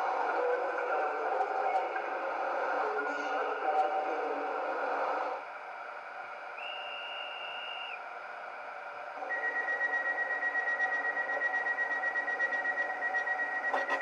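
Model train sound decoder playing recorded City Airport Train sounds through its small onboard speaker. A spoken onboard announcement runs for about five seconds, then a single short high beep, then a steady high tone pulsing rapidly for the last five seconds: the door warning signal.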